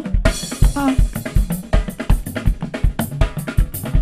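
Drum kit playing a fast, busy pattern of bass drum and snare strikes with rimshots.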